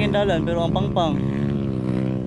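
Dirt bike engine running at a steady low pitch on a slow trail ride, with a voice talking over it in the first second or so.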